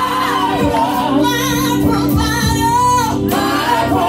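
A group of women singing a gospel song into microphones, with wavering, held sung notes over steady low sustained accompaniment.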